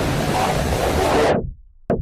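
A steady electronic noise wash, a whoosh-like swell in a dubstep-style track, that is swept down by a falling filter about one and a half seconds in and drops to a brief silence, ending in a sharp click.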